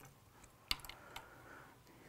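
A few light clicks of fly-tying tools and materials being handled at the vise, the sharpest about two-thirds of a second in, with two fainter ones after it.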